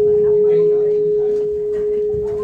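A single steady pure tone, held at one pitch without wavering, coming through the stage sound system, with faint voices underneath.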